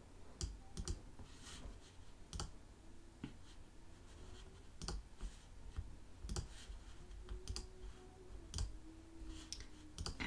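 Faint, irregular clicking of a computer mouse and keyboard, a dozen or so sharp clicks spread unevenly over several seconds.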